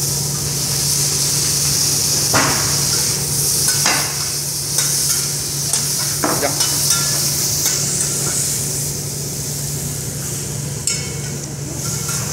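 Meat, shrimp and vegetables sizzling on a hot teppanyaki steel griddle, a loud steady hiss, with the chef's metal spatula and fork clacking and scraping on the steel several times, mostly in the first eight seconds. A steady low hum runs underneath.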